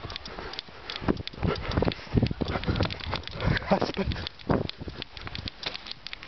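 Footsteps and knocks from handling a handheld camera as a person walks down a grassy slope: an irregular run of thuds and clicks.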